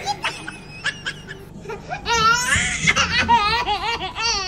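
High-pitched laughter, quiet at first, then loud quick repeated bursts through the second half.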